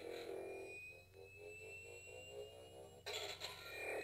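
Iron Man Arc FX toy glove playing its electronic repulsor sound effect, faint: a slowly rising whine over a warbling tone, with a short hiss about three seconds in.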